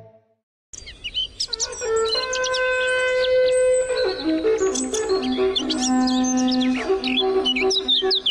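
Birds chirping and singing, joined about two seconds in by a Romanian long shepherd's horn (bucium) playing a slow call of long held notes that step down in pitch and back up.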